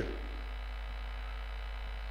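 Steady low electrical mains hum from the sound system, with no other sound.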